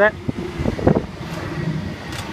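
Waratah electric train pulling into the platform and running past at low speed, a steady hum with low tones. Wind buffets the microphone.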